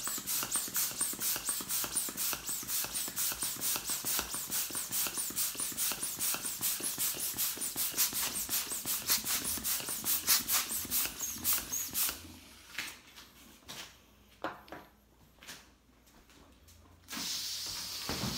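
Hand balloon pump worked in quick, even strokes, several a second, each stroke a short rush of air, as a latex balloon is inflated on its nozzle. The pumping stops about two-thirds of the way through, leaving a few scattered knocks, and a sudden steady airy rush starts near the end.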